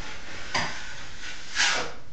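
A 12-inch steel drywall taping knife scraping across wet joint compound as it is drawn along a joint to flatten the final coat, with a louder scrape about a second and a half in.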